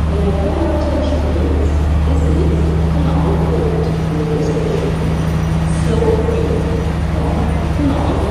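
Steady low hum of a diesel passenger train idling at a station platform, with indistinct voices of people talking around it.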